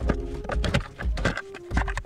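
Plastic fuse box cover in a 2000 Corvette's passenger footwell being unclipped and lifted off: a quick run of clicks and knocks, over soft background music.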